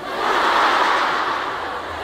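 A large audience laughing together at a joke, a dense wash of many voices that swells at the start and slowly fades.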